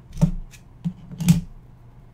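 Four sharp, unevenly spaced clicks from keys tapped on a computer keyboard, the loudest a little over a second in.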